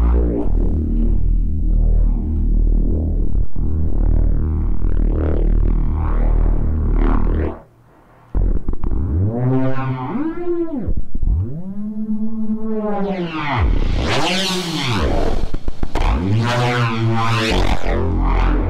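A distorted neuro bass synth patch built in Bitwig's Poly Grid playing. It holds a heavy low note for the first seven seconds or so, cuts out briefly near eight seconds, then comes back swooping up and down in pitch and getting brighter toward the end. Its talking, vowel-like character comes from filters under random modulation.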